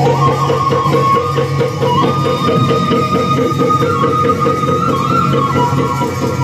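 Traditional Assamese Bhaona accompaniment: khol drums keep a steady rhythm under a sustained instrumental melody that steps between held notes.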